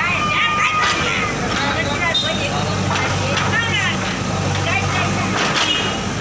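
Diesel engine of a JCB backhoe loader running steadily under load as it works its bucket against a masonry wall, with a few knocks and people's voices in the background.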